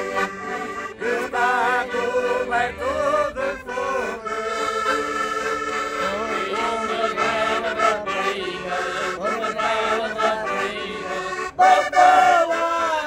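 Concertinas (Portuguese button accordions) playing a traditional Minho folk song, with voices singing along.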